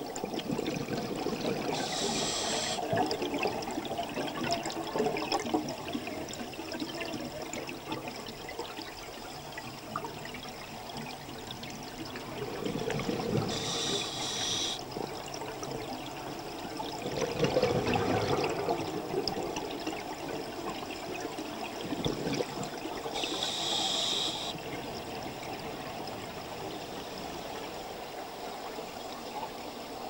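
Scuba diver's regulator breathing heard underwater: three short hissing inhalations about ten seconds apart, with bubbling rushes of exhaled air between them.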